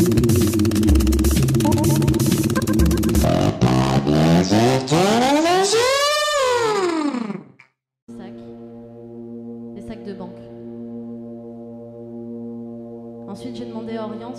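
Electronic music with a dense drum-machine beat, ending in a pitch sweep that rises and falls before cutting out suddenly about eight seconds in. Then a steady droning chord of several held tones, changing slightly near the end.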